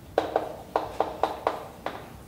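Chalk tapping on a blackboard in short, sharp strokes, about seven over two seconds, as numbers are written up.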